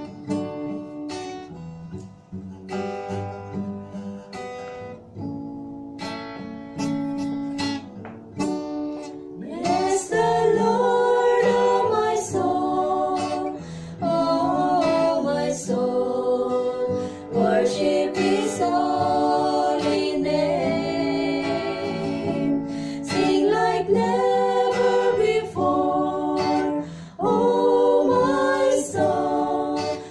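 Acoustic guitar strumming an introduction; about ten seconds in, a small group of women start singing a worship song over it.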